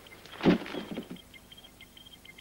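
A single dull thump about half a second in, with a short scrape dying away after it, as a large panel is handled.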